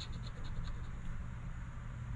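A metal coin scratching the coating off a paper scratch-off lottery ticket in short, quick strokes.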